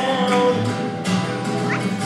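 Two acoustic guitars strummed in a steady rhythm. A held sung note over them fades out about half a second in, and a short, rising, high vocal yelp comes near the end.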